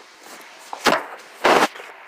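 Two loud, short rubbing knocks about half a second apart, the second a little longer: handling noise from a phone being moved around in the hand.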